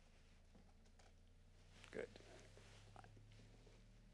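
Very faint, very low-pitched test tone from a slow frequency sweep, starting at about 25 Hz and slowly rising, growing a little stronger from about halfway.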